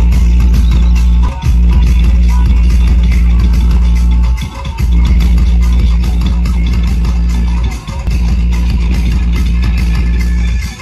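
Music blasting from a truck-mounted DJ sound system's stacked bass speakers, dominated by very loud, heavy bass. The music drops out briefly about a second and a half, four and a half and eight seconds in.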